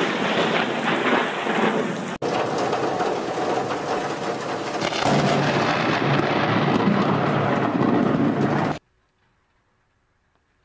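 Thunder rumbling over heavy rain, changing abruptly about two and five seconds in, then cutting off to silence near the end.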